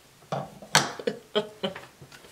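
A woman laughing quietly in several short breathy bursts.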